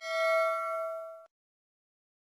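A single metallic bell ding, struck once, ringing for just over a second and cutting off abruptly.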